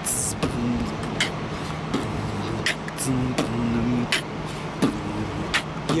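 Live beatboxing: sharp mouth-percussion hits about every half second to second over a hummed bass line that steps between notes, with road traffic noise underneath.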